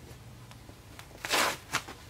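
An S-Cut emergency cutter's recessed circular blade ripping through thick firefighter bunker-gear fabric: a short rip a little over a second in, then a brief second one.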